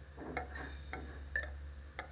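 Sharp metallic knocks, four of them about half a second apart, from building work in a lift shaft, over a low steady hum.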